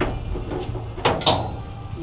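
Metal parts being handled while a shifter cable is fitted to the shifter on the trans cover: a short click at the start, then a louder sharp clack and scrape about a second in, over a steady low hum.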